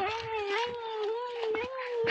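A single long, drawn-out animal call held at one slightly wavering pitch.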